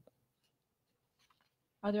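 Near silence: a pause in a meeting-room discussion, with a voice starting to speak near the end.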